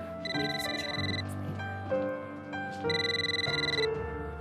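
Telephone ringing twice, each ring a high, steady electronic trill about a second long, over soft background music.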